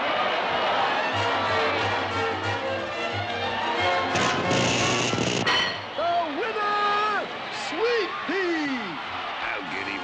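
Cartoon orchestral music score, with a loud noisy sound effect about four to five seconds in. In the last four seconds come several sliding, swooping tones that rise and fall.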